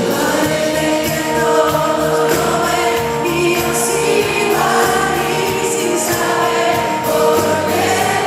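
Live performance of a Spanish pop song: the band plays on while many voices sing the melody in long held notes, the crowd singing along with the singer.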